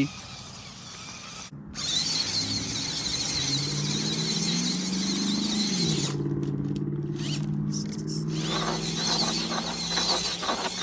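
Electric drive of a Danchee RidgeRock RC crawler, twin 37-turn 380-size brushed motors and gearing, whining under throttle, starting about two seconds in. The pitch climbs, drops once about halfway through, then holds steady.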